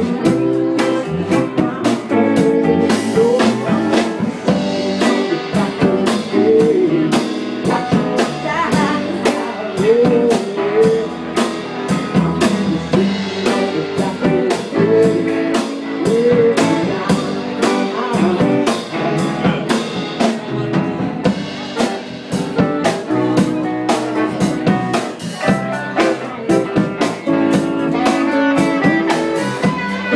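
Live band playing a slow soul song: electric guitars, bass, drums and keyboards, with a man singing into a microphone.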